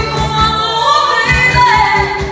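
A woman singing karaoke into a corded handheld microphone over a backing track with a steady beat.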